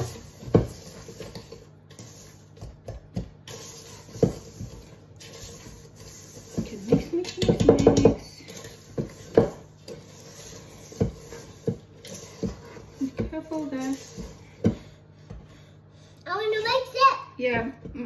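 Fork mixing cake batter in a stainless steel mixing bowl, with scattered clicks and scrapes of metal on metal. About seven seconds in comes a quick run of beating strokes, the loudest part.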